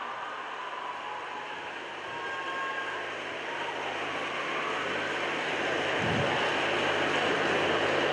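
Audience applauding, the clapping growing steadily louder.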